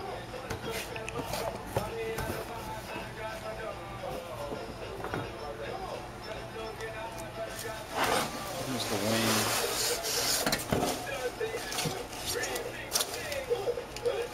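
Cardboard box and packing material being handled and rubbed during unpacking, with a louder stretch of rustling about eight seconds in that lasts a few seconds.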